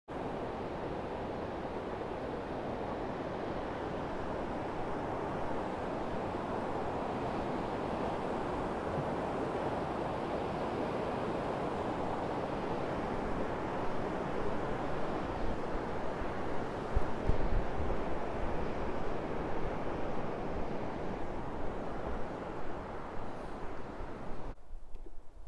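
Rushing white-water river, a steady roar of fast water over rocks. In the second half, irregular low rumbles of wind buffeting the microphone are added.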